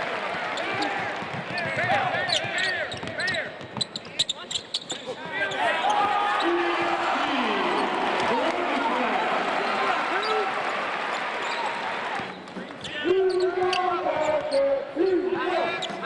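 Live basketball game sound on a hardwood court: the ball bouncing, many short squeaks from sneakers, and arena voices in the background.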